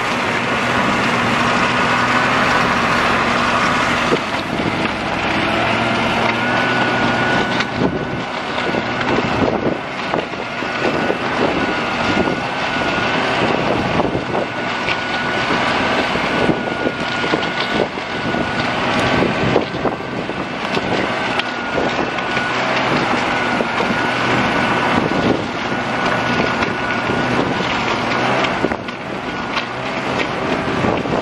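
Snowmobile engine running under way along a snowy trail, a loud steady whine that wavers slightly in pitch.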